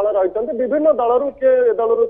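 A man speaking continuously in a news report. The voice sounds narrow and phone-like.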